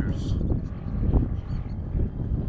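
Wind buffeting the camera microphone: a loud, low, gusting rumble throughout, with a man's voice briefly at the start.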